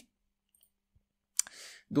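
Quiet for over a second, then a single sharp computer mouse click, followed by a short soft breath before he speaks again.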